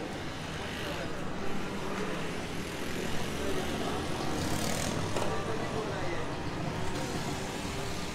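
Busy market background noise: a steady rumble like passing traffic, with voices talking in the background.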